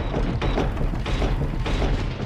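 Mechanical weapon sound effects: three rough grinding bursts, about two-thirds of a second apart, over a deep steady rumble.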